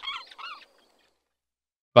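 A few short gliding chirps fading out in the first half-second, the tail of a segment-title transition effect, then dead silence; a man's voice starts speaking at the very end.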